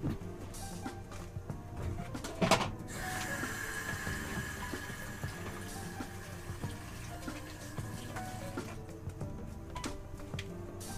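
A knock about two and a half seconds in, then tap water running into a sink for about six seconds before it is shut off.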